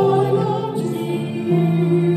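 A small church congregation singing a hymn together in slow, held notes.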